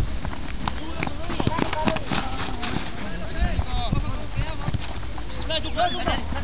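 Footballers shouting to each other during play, with a few sharp knocks about one to two seconds in and wind rumbling on the microphone.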